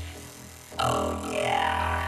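Electronic music intro: a low, sustained bass drone, joined about a second in by a buzzing, droning synth sound whose pitch glides and bends.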